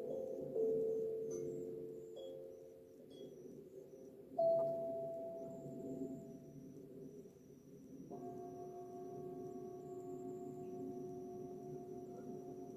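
Hand-played ringing tuned instruments: several notes overlap and fade, a louder struck note sounds about four seconds in, then from about eight seconds a steady ring of several tones together, like a singing bowl.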